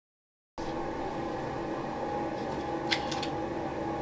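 Dead silence for about half a second, then a steady mechanical room hum, like a fan, comes in abruptly, with a few faint clicks about three seconds in.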